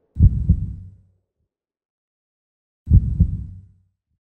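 Heartbeat sound effect: two deep lub-dub double thumps, the second about two and a half seconds after the first.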